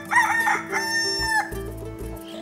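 A rooster crowing once, a full cock-a-doodle-doo whose last note is held and ends about a second and a half in, over a steady background music tone.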